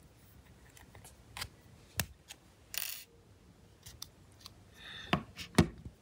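A SIM ejector pin pushed into a smartphone's SIM tray hole and the dual-SIM tray slid out: faint scattered clicks, a sharp click about two seconds in, a short scrape just after, and a few more clicks near the end.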